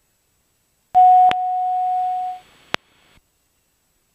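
A single steady electronic beep tone in the aircraft's headset audio, lasting about a second and a half, with a click near its start and another click shortly after it ends, over a short hiss.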